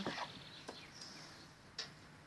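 Knife cutting through a grilled pineapple slice on a wooden cutting board, the blade knocking on the board twice, faintly about two-thirds of a second in and more sharply near the end.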